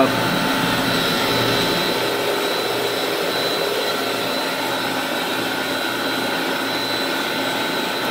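Steady drone of 40 hp Tech Top electric motors on variable-frequency drives, driving Aurora centrifugal slide pumps at full speed, with a steady high whine over it. Water churns turbulently in the concrete surge pit around the pump suction pipes.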